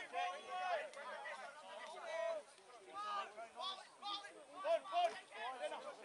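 Several people talking at once: indistinct chatter with overlapping voices.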